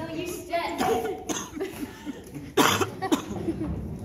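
A person coughs sharply about two and a half seconds in, with a smaller cough just after, over faint scattered speech.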